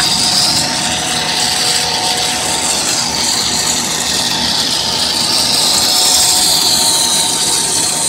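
Corn twist snack extruder production line running: a steady machine noise with a few constant hums and a high whine that slowly wavers up and down in pitch.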